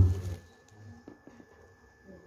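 The last syllable of a man's amplified announcement, then a quiet pause of hall room tone with a faint steady high tone, likely from the PA system, and a few small clicks.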